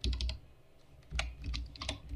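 Computer keyboard typing: a keystroke at the start, then a quick run of several keystrokes in the second half.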